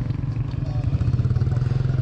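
A small engine idling steadily nearby, a low hum with a fast, even pulse.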